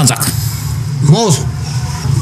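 A man's brief spoken exclamation about a second in, over a steady low hum.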